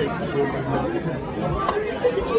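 Chatter of many overlapping voices from diners talking in a busy restaurant, with no single voice standing out.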